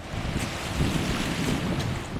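Wind buffeting the microphone over choppy floodwater, with a steady rushing rumble and water lapping against a rocky shore.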